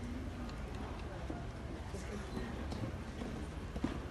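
Hoofbeats of a horse cantering on a dirt arena, under a steady murmur of spectators' voices.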